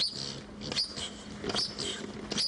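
Foot-operated bellows air pump being worked, giving a short squeaky puff of air about every 0.8 seconds as it inflates a blow-up doll.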